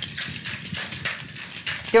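Cracked ice rattling and knocking inside a metal cocktail shaker being shaken hard, a fast, even rhythm of sharp knocks.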